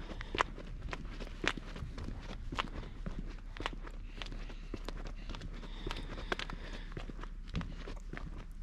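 Footsteps on a paved path, a steady walking pace of about two steps a second, over a faint low rumble.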